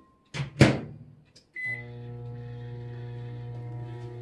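Microwave oven being started: a loud clunk of the door shutting, a click and a short keypad beep, then the oven runs with a steady hum. It is heating clear glycerin melt-and-pour soap base on a thirty-second cycle.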